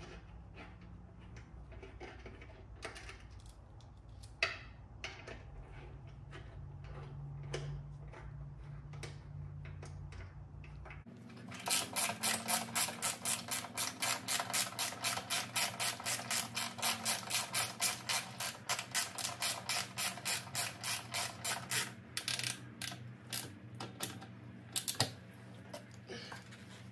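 Socket ratchet wrench clicking rapidly and evenly for about ten seconds, from about eleven seconds in, as a docking-hardware bolt is run down on a motorcycle's rear fender strut. Before and after it come scattered light metallic clicks of small hardware being handled.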